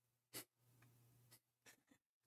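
Near silence: room tone with a faint low hum, one short soft click about a third of a second in, and two fainter ticks later.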